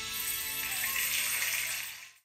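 Christmas medley music playing, then dying away near the end.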